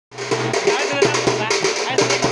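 Drums struck in a quick, steady rhythm over a steady droning tone, with voices mixed in.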